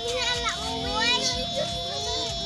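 Children's voices talking and calling out, with a steady high tone running underneath.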